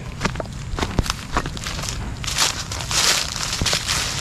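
Footsteps crunching on dry fallen leaves and dirt, an uneven run of crackling steps, with a few louder crunches in the second half.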